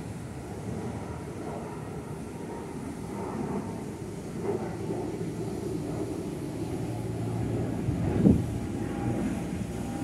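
Twin-engine jet airliner climbing out after takeoff, its engines a steady low rumble that slowly builds, with a short louder blip about eight seconds in.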